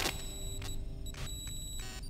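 High-pitched electronic beeping that starts suddenly and comes in about three short pulses, broken by brief clicks.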